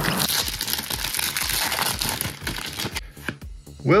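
Foil trading-card pack wrapper crinkling and tearing as it is ripped open, stopping about three seconds in, over background music.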